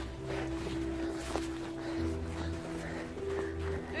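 Background music of sustained, held chords whose low notes shift about halfway through, over faint rustling and footfalls from running on snow.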